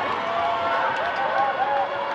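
Several voices talking and calling out at once over a noisy background babble. A steady held tone comes in near the end.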